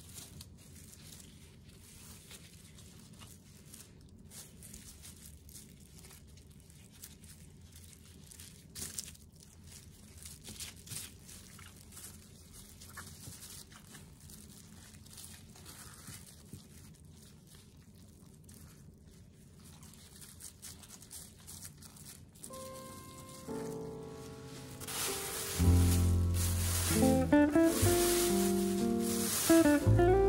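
Faint crinkling and rustling of a plastic sheet and cabbage leaves under gloved hands as paste is rubbed into napa cabbage for kimchi. Background music comes in about two-thirds of the way through and is the loudest sound near the end.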